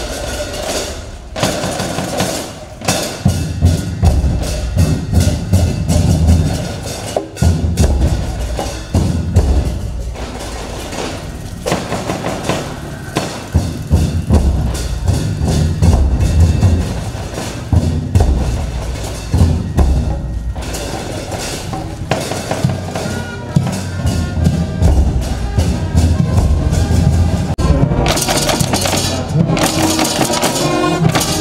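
A drum and cymbal troupe playing: large barrel drums struck with sticks in quick, continuous beats, with hand cymbals clashing. The cymbals ring out louder near the end.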